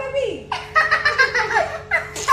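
A young girl giggling, mixed with bits of talk.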